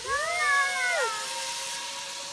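A rider's high-pitched whoop, rising and then falling, lasting about a second, as two riders go by on a zip line. Under it, the trolley pulleys whine steadily and the steel cable hisses.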